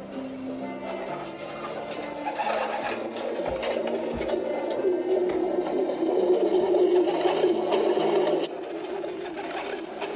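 A recording of pigeons cooing, played from a laptop: many overlapping coos that build to their loudest in the middle and cut off sharply about eight and a half seconds in. Soft background music with steady held notes sounds at first.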